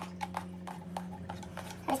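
Light clicks and taps, several in a row, as the aluminium bread-machine pan is handled and tipped to turn the dough out, over a steady low hum.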